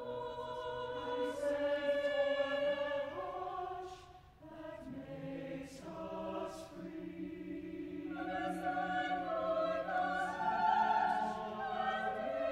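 Choir singing sustained chords that move from one held harmony to the next. A brief break comes about four seconds in, and the sound swells louder near the end.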